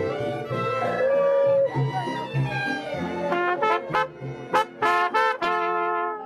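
Mariachi band playing, led by trumpets: held notes at first, then a run of short, sharp trumpet notes from about halfway through.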